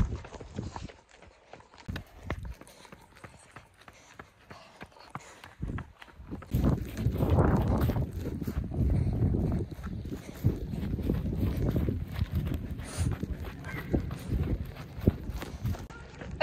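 A runner's footfalls in Hoka running shoes, a steady rhythm of steps while running uphill, picked up by a handheld phone. From about six and a half seconds in, a louder low rumble on the microphone runs under the steps.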